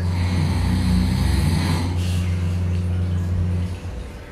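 A small electric motor hums steadily at a low pitch and cuts off a little before the end. A hiss sounds over the first two seconds, and a brief one follows.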